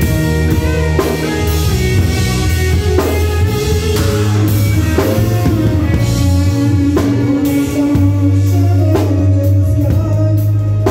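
Live band playing an instrumental passage with no vocals: a drum kit heard close up, with cymbal strikes roughly every second, over electric guitar and low sustained bass notes.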